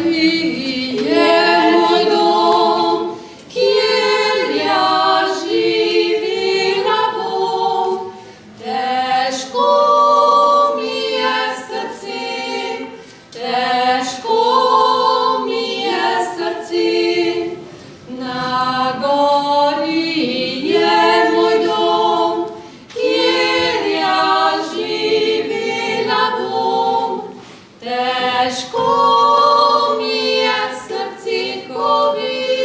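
Three women singing a Slovenian folk song a cappella in harmony. The singing comes in phrases of about five seconds, each followed by a brief pause for breath.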